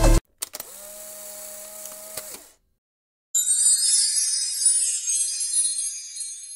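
Electronic dance music cuts off at the start, and a faint steady hum follows for about two seconds. After a brief gap, a bright, shimmering chime sound, like a sparkle effect, sets in about three seconds in and slowly fades.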